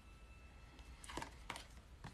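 Quiet room with a few soft clicks a little after a second in, as tarot cards are handled and the next card is slid out of the hand.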